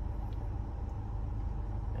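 Steady low hum of a car idling, heard from inside the cabin with the air-conditioning fan running.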